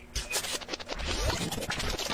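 A quick, irregular run of scratchy clicks.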